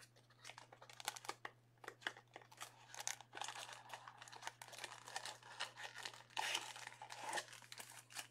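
Plastic trading-card packaging crinkling and tearing in the hands, a run of irregular crackles with no steady rhythm.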